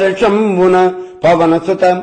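A man's voice chanting a verse in a sing-song tone on long held notes, with a short break about a second in.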